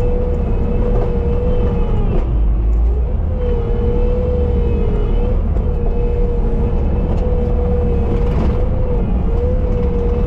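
Bobcat T770 compact track loader running steadily under work, a heavy diesel rumble with a steady whine over it that dips briefly in pitch about two seconds in and twice more later.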